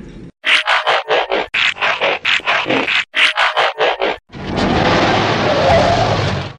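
Robot transformation sound effect: a rapid run of mechanical clicks and clanks, about four a second, for nearly four seconds. It gives way to a steady rushing noise.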